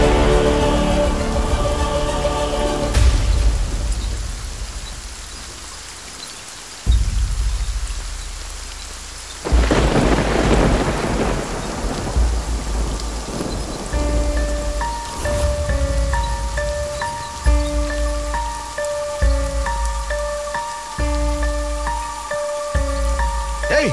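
Heavy rain falling with deep rolls of thunder, the loudest breaking suddenly about nine or ten seconds in. Music fades out over the first few seconds, and from about fourteen seconds a slow, sparse melody of held tones plays over the rain.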